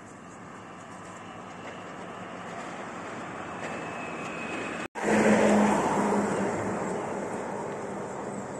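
Road traffic noise: a passing car's tyre and engine sound swelling steadily as it approaches. After an abrupt cut, a louder vehicle passes close by with a low engine hum and fades away.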